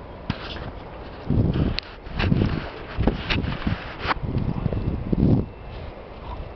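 Footsteps of a person walking over dry grass and sandy ground, about one heavy step a second with rustling, and a few sharp clicks mixed in.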